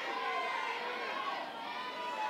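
Ballpark crowd noise: many overlapping voices of spectators and players chattering and calling out at once, steady throughout.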